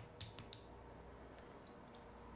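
A few faint, short clicks in the first half second, then only low room hiss.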